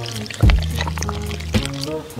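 Black tea poured into a tall glass full of ice, over background music with a low beat about half a second in and again near the end.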